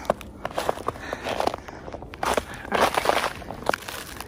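Footsteps of a person in boots walking on a snowy trail, pressing into snow and wet leaf litter, in an uneven series of steps.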